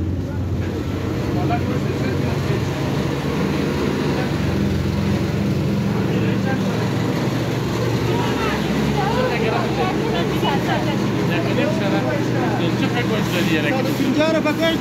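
Busy street noise with a steady low engine hum, and several people talking over it in the second half.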